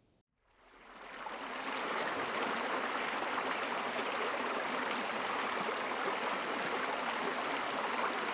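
A shallow creek running and splashing over rocks, a steady rush of water recorded through a Zoom Q8's SGH-6 shotgun capsule. It fades in about a second in, after a brief silence.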